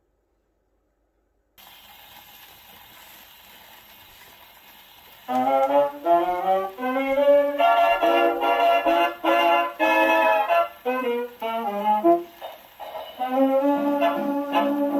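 1937 Victor 78 rpm shellac record played on an Orthophonic Victrola acoustic phonograph. A steady surface hiss from the lead-in groove comes first, then a swing-era dance band's brass and saxophones enter about five seconds in with a fox-trot introduction.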